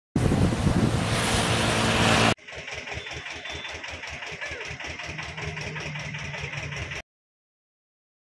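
Engine noise: about two seconds of loud rushing noise, then after an abrupt cut a quieter engine running with a rapid even pulse, about six a second. It cuts off suddenly about a second before the end.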